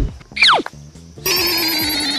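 A short falling whistle-like glide, then from about a second in a continuous rapid electronic trill like a ringing telephone bell, over a steady low tone.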